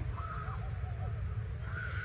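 Faint bird calls, a few thin, wavering notes coming and going, over a low steady outdoor rumble.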